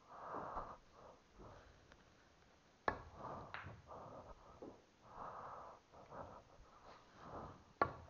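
Pool balls clicking on a pool table: a sharp click about three seconds in and another near the end, each followed by a softer click about half a second later. Between them, breathing close to the microphone.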